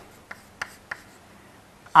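Chalk writing on a blackboard: a few short, faint scratches and taps as letters are written.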